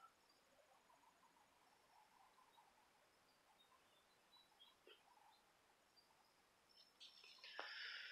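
Near silence: faint outdoor ambience with a few faint, short bird chirps, and a soft rustle near the end.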